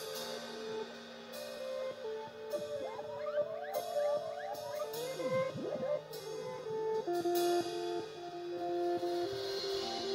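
Instrumental break of a slow song played live: a lead guitar solo with sliding, bending notes over sustained backing chords, with drums and cymbal crashes.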